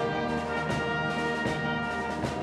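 Concert wind band playing live: brass and woodwinds sustaining full chords, with a few accented beats.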